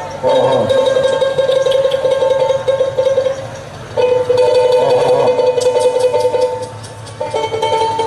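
Live folk music: a plucked string instrument picked in a fast tremolo plays long held notes, in three phrases of about three seconds each with short breaks between them.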